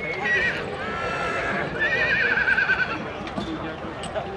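A horse whinnying: shorter high calls near the start, then a long quavering whinny about two seconds in that wavers up and down and falls slightly in pitch for about a second.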